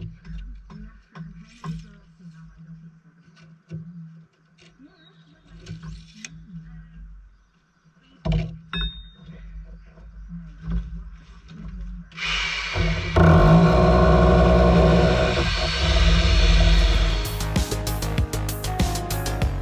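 Scattered knocks and clinks of loose brick and rubble being handled. Then, about twelve seconds in, a Titan SDS Plus hammer drill starts boring into the brickwork and runs loud and steady for about five seconds.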